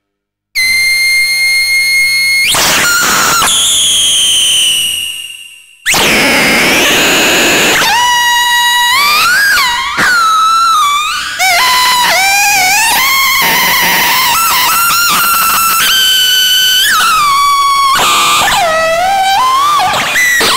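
Behringer Neutron analog synthesizer played live. A held note cuts in half a second in and turns into gliding pitches that fade out around five seconds in. The sound returns suddenly at six seconds and goes on as sliding, warbling notes.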